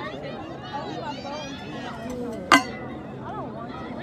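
Several people talking in the background, with one sharp click or knock about two and a half seconds in, the loudest sound.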